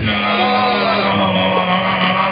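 Beatboxer holding one long hummed bass note into a handheld microphone, with higher sliding vocal tones over it and the percussive beats paused.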